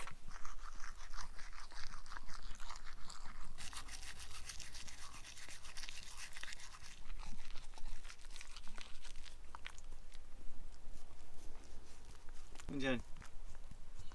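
Toothbrush scrubbing a small dog's teeth: rapid, scratchy brushing strokes that go on almost without a break.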